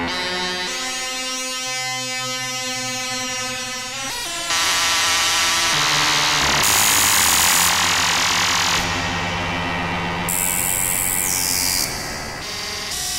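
Eurorack modular synthesizer FM patch: an E-RM Polygogo oscillator frequency-modulated by a WMD SSF Spectrum VCO and run through two Mutable Instruments Ripples filters, played from a keyboard. Pitched tones rich in overtones step from note to note, then about four and a half seconds in the sound jumps louder into a harsh, noisy buzz that eases and flares again near the end.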